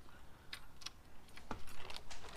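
A few scattered light metallic clicks: a washer and nut being fitted by hand onto the threaded torch-connector stud of a plasma cutter's front panel.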